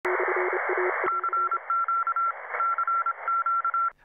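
Logo sting of Morse-code-style beeping over radio static: a lower tone pulses in short and long beeps for the first second and a half, then a higher tone taps out dots and dashes. The static is loudest at first and drops after a click about a second in, and everything cuts off just before the end.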